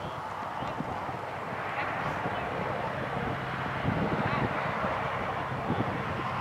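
Indistinct background voices over a steady outdoor hiss, with no clear distinct sounds standing out.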